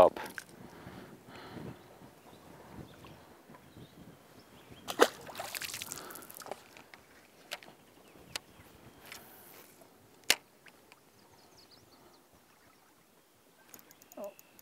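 Faint handling of fishing tackle: a few sharp clicks, with a brief rushing hiss about five seconds in.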